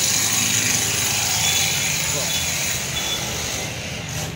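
Steady din of a busy street: traffic noise with distant voices, and no single sound standing out.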